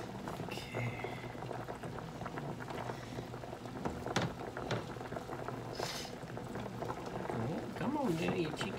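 Pot of small potatoes at a rolling boil, bubbling steadily, with a couple of brief sharper sounds about four and six seconds in.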